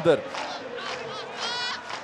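Football stadium crowd shouting and chanting, with several voices rising above a steady crowd noise.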